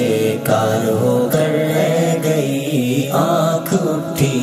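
A man singing an Urdu ghazal in nasheed style, drawing out a long, ornamented note through the middle of a line.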